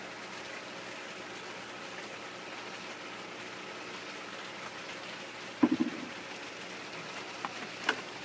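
Air stone bubbling steadily in a bucket of hydroponic nutrient solution, fed by a small air pump and stirring the freshly added nutrient. A brief bump a little past halfway.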